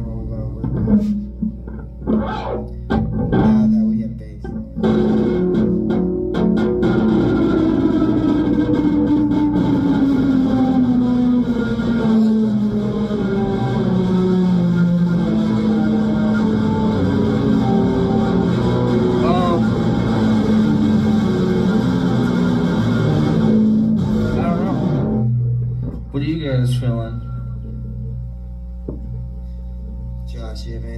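Electric guitars jamming: a few plucked notes, then a long sustained, droning tone that slides slowly down in pitch and cuts off suddenly about 25 seconds in, leaving a steady amplifier hum.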